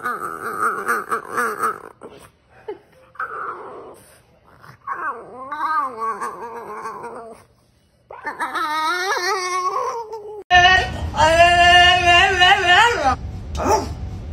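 A French bulldog grumbling and moaning in pitched, wavering gremlin-like vocalizations with breaks between them. About ten seconds in the sound cuts to a steady low hum with a loud, long, wavering howl-like call over it.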